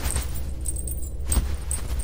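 Small metal pieces jingling, with a sharper clink about a second and a half in, over a steady low background rumble.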